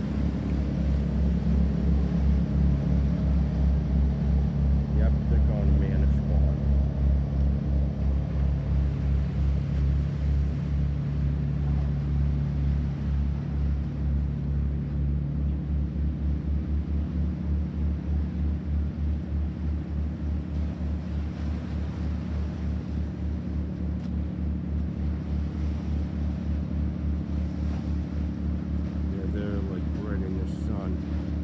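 Large diesel engine of a fishing boat passing through the inlet: a steady low, evenly pulsing throb. It is loudest about five seconds in, then slowly fades as the boat moves off, and its pitch shifts slightly about halfway through.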